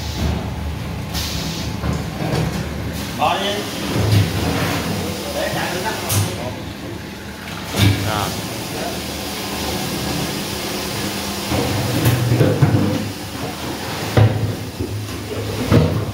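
Water pouring from the nozzle of an automatic bottle-filling machine into a 20-litre plastic water bottle, over a steady low machine hum, with a few knocks of the plastic bottles being handled on the steel roller conveyor.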